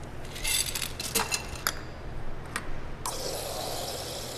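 Ice poured from a scoop into a martini glass, clinking and rattling, to chill the glass. About three seconds in, a bar soda gun starts spraying onto the ice with a steady hiss.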